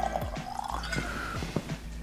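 Bourbon poured from a 1.75-litre glass bottle into a small tasting glass, glugging and trickling with a rising tone as the glass fills. Soft background music underneath.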